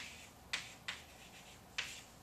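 Chalk writing on a chalkboard: three short, sharp chalk strokes, about half a second in, about a second in, and near the end.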